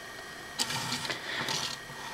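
Faint rustling and scraping of plastic toy-robot parts being handled and set in place, with a few soft ticks.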